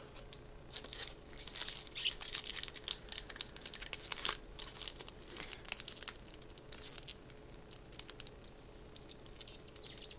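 Foil Magic: The Gathering booster pack wrapper crinkling and crackling as it is handled and torn at by its tear strip, which the opener finds too flimsy. The crackling is dense for the first several seconds and thins out near the end.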